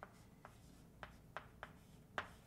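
Faint chalk on a chalkboard: about five short taps and strokes in two seconds as letters are written.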